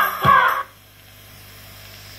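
A song with singing and a beat about twice a second, played from a cassette through a Johnson ICR-4000 boombox's speakers; it cuts off suddenly about half a second in, leaving a faint low hum.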